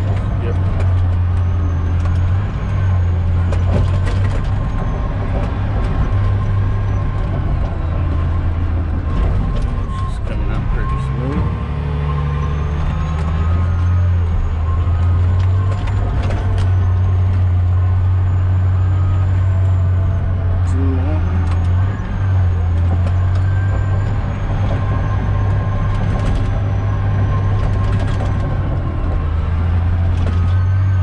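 Caterpillar D10T bulldozer's C27 V12 diesel engine running steadily under load, heard from inside the cab. Scattered short knocks and clanks from the tracks and blade working through dirt and rock come over the engine.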